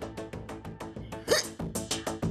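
Background music with a fast, rhythmic staccato beat. About a second in, a woman hiccups once, loudly.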